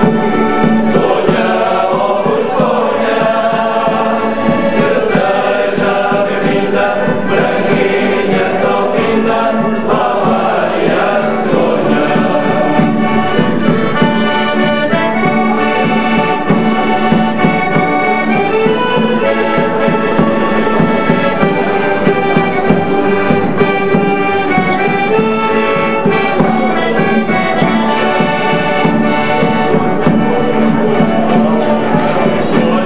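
A folk ensemble playing a song on accordion, acoustic guitars and a drum, with a men's choir singing together over it, at a steady level.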